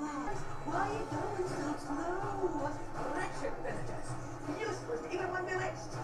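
The film's soundtrack heard from a TV across the room: women singing a song over band music, picked up faintly by the room microphone, with a short laugh from a viewer about a second in.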